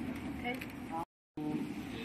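Low, steady background noise with faint voices. A little after a second in it cuts out completely for about a third of a second, then comes back.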